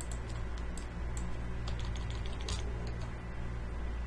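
Scattered clicks of a computer mouse and keyboard over a steady low hum. Several come in quick pairs, with a short cluster of clicks about two and a half seconds in.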